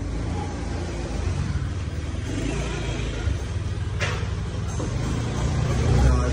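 Steady low rumble of nearby city street traffic, with one sharp click about four seconds in.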